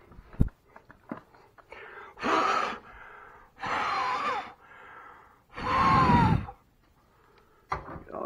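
Three loud, breathy puffs of air from a person, each under a second long and about a second and a half apart, the third the loudest. A short knock comes just before them, near the start.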